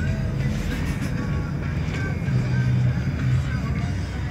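A rock song with a singing voice playing on a car radio, heard inside a moving car's cabin over steady low engine and road rumble.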